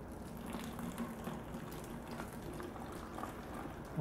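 Warm water being poured from a cup into a plastic water bottle holding sugar and yeast, a quiet steady pour.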